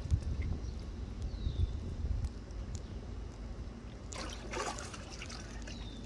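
Swimming-pool water lapping and trickling close to the microphone, with a louder splash of water about four seconds in.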